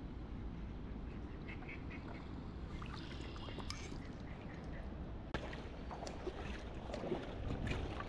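Shallow water sloshing around a wading person's legs and hand, with scattered small clicks and one sharp click about five seconds in.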